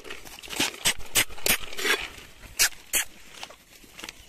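Roasted chickpeas clicking and rattling against a metal bucket as monkeys grab handfuls and the bucket is handled: a quick, irregular series of sharp clicks.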